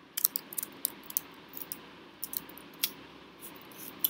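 Typing on a computer keyboard: irregular keystroke clicks in quick clusters with short pauses between them.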